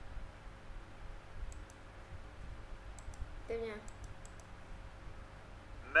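Computer mouse clicking: a handful of short, sharp clicks scattered over a few seconds.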